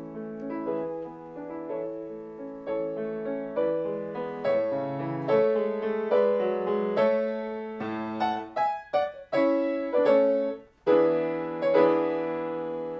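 Yamaha grand piano played solo: struck notes and chords that ring and die away, growing louder in the middle, with a short break near the end before the playing resumes.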